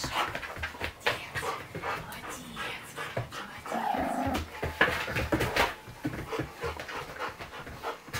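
Young American Akita panting hard while she plays, with short clicks and scuffles of her claws on a hard floor as she moves.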